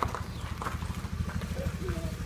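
Honda Vario scooter's small single-cylinder engine running at low speed as it rolls up close, a rapid low pulsing.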